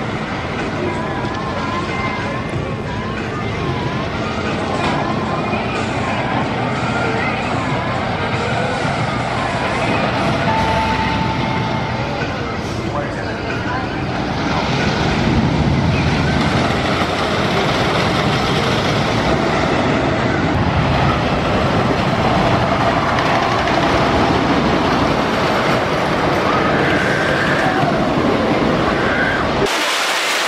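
Amusement park ambience with crowd voices and a wailing tone rising and falling repeatedly for the first ten seconds. From about halfway, the rumble of a wooden roller coaster train running on its track builds up and stays loud.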